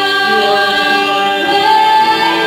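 A worship team of several singers on microphones singing together in harmony, holding long notes, with the melody stepping up in pitch about one and a half seconds in.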